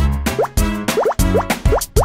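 Upbeat children's instrumental music with a steady beat, overlaid with a run of quick rising 'bloop' cartoon sound effects in the second half.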